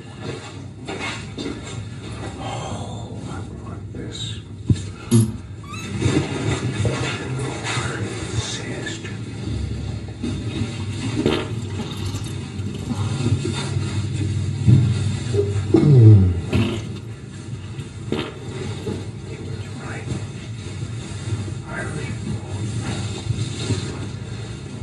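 A man muttering to himself, muffled and hard to make out, over a steady rumble and hiss from a noisy, enhanced microphone recording.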